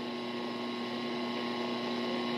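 Steady electrical mains hum over an even hiss, the background noise of an old videotape recording in a small room.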